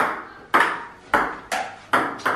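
Table tennis rally: the ball clicking off paddles and bouncing on the table, about five sharp clicks roughly half a second apart, each with a short ring of room echo.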